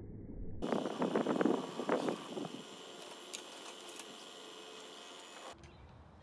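Water rushing and splashing along a Hobie 16 catamaran hull under sail, with a hiss of wind. It is loudest in the first couple of seconds, then settles to a steady hiss, and cuts off abruptly near the end to a quieter outdoor ambience.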